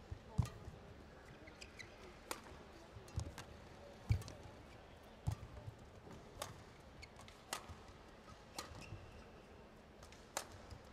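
Badminton rally: racket strings striking the shuttlecock about once a second, with rubber-soled shoes squeaking and feet landing on the court mat between the shots. Faint throughout.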